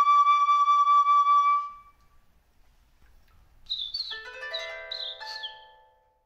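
A flute holds one long final note of a tune, fading out just under two seconds in. After a short pause, a few quick falling bird-like chirps sound over several ringing chime-like tones that die away.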